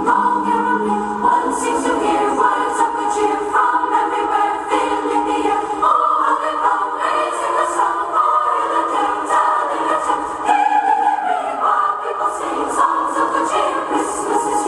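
Choral music: a choir sings together in held, shifting chords, with faint light percussion above the voices.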